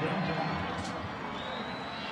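Steady crowd noise from a football stadium crowd, reacting to a touchdown. A faint thin high tone comes in about halfway through.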